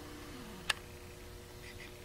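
A faint, steady hum with a fainter tone sliding down in pitch during the first second, and a single sharp click under a second in.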